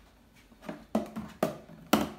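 Two lidded food storage containers being set down on a stone countertop: a quick series of hollow knocks and clatters, the loudest near the end.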